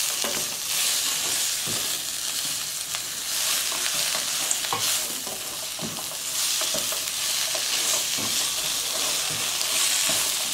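Battered fried mushrooms in a hot chili-butter sauce sizzling in a stainless-steel wok as they are stirred with a silicone spatula. The sizzle swells and eases with each stir, and the spatula scrapes and knocks lightly against the pan.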